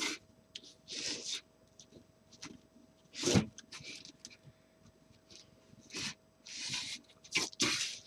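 Burlap fabric rustling and scraping in short, irregular bursts as it is pulled tight and pressed around a lampshade, with one louder bump about three seconds in.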